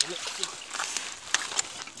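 Faint voices in the background, with scattered light clicks and knocks over a steady hiss.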